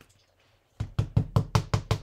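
Ink pad dabbed quickly against a rubber stamp on an acrylic block to ink it: a run of about eight short knocks, roughly six a second, starting just under a second in.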